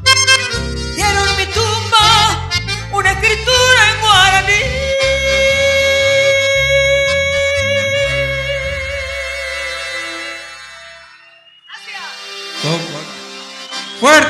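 A woman singing a folk song with vibrato over accordion and guitars, the piece ending on a long held accordion chord that fades out about ten seconds in. Applause starts up about two seconds later.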